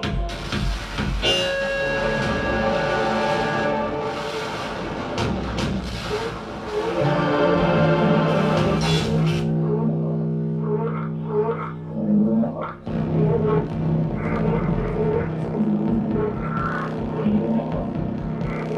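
Live electronic music: a dense, noisy wash with held tones, thinning about seven seconds in to a steady low drone with scattered higher blips.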